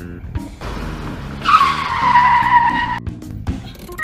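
Car tyres screeching in a skid: a rushing noise builds, then a loud squeal that slides slightly down in pitch for about a second and a half before cutting off suddenly. Background music runs underneath.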